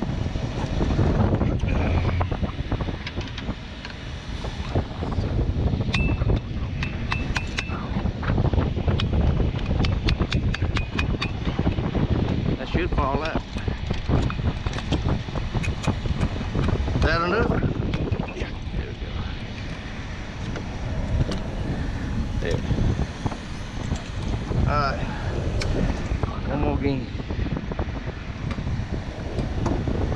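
Wind buffeting a GoPro microphone over a steady low rumble, with scattered clicks and clinks of hand tools on the metal hardware of porcelain insulator strings. Brief muffled voices come through a few times.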